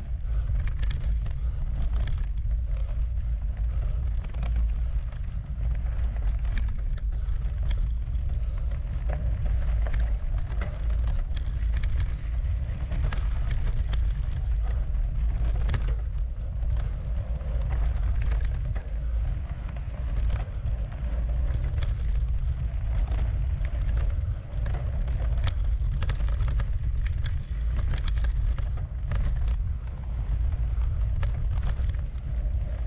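A mountain bike ridden at speed over a dirt and gravel forest trail: a steady tyre and wind rumble on the camera microphone, with frequent small clicks and rattles from the bike over the rough ground.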